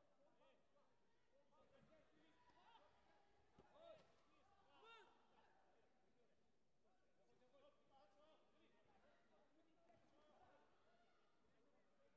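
Near silence: faint, distant voices throughout, with one brief thump a little under four seconds in.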